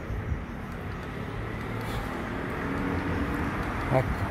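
Street traffic: a motor vehicle's engine running as it goes by, growing gradually louder over the few seconds.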